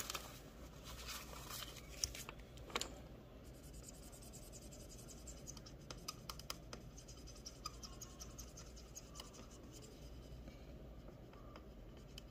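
Marker pen scratching on a paper chart in quiet short strokes as bat shapes are colored in. A couple of soft knocks in the first few seconds.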